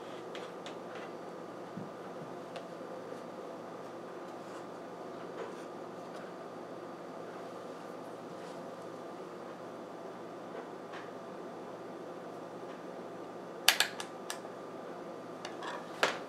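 Steady mechanical hum with a few fixed tones, like a fan, under faint ticks of handling. About 14 s in comes a quick cluster of sharp clicks, with another just before the end, as the multimeter probe leads are handled.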